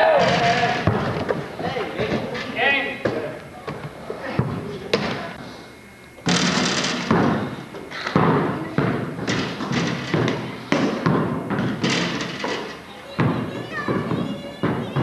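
A basketball bouncing and thudding on a gym floor, a run of sharp thumps that comes thickest in the second half, amid players' shouts and calls.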